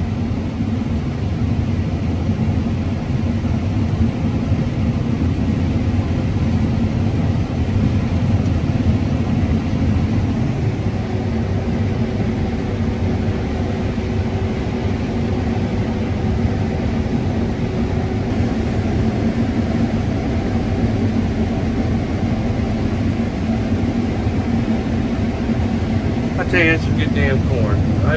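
Combine harvester running steadily while harvesting corn, heard from inside the cab: a constant low drone of engine and threshing machinery. A faint steady tone joins in for several seconds around the middle.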